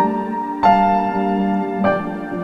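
Slow solo piano music, with a few sustained notes struck about a second apart and left ringing.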